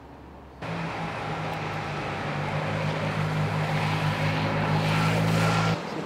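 A motor vehicle's engine running with a steady low hum, growing gradually louder. It starts suddenly under a second in and cuts off abruptly near the end.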